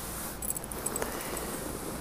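Fingertips rubbing and scratching over a textured woven fabric with a raised pattern: a soft, steady rustling hiss, with a few faint ticks about half a second in.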